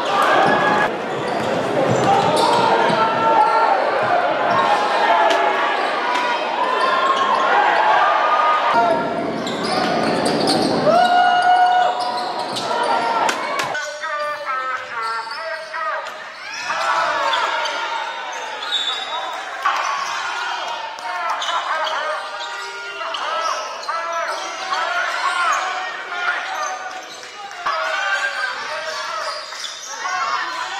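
Live basketball game sound in an indoor arena: the ball bouncing on the court, short sneaker squeaks, and voices of players and spectators echoing in the hall. The sound changes abruptly about 14 seconds in, where one game's footage cuts to another, and it is a little quieter after the cut.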